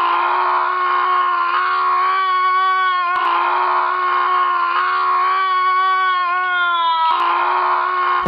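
A long, drawn-out scream held on one steady high note with slight wavers, breaking briefly twice.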